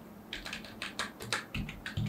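Typing on a computer keyboard: a quick, irregular run of key clicks that starts shortly after the beginning.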